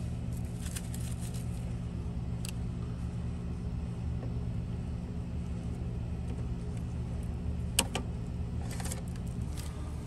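A steady low machine hum throughout, with a few light clicks and taps from the electrical wires being handled and pulled through the box.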